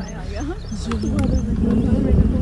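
People's voices talking over a low rumble, louder in the second half, with a short run of quick, high bird chirps a little before the middle.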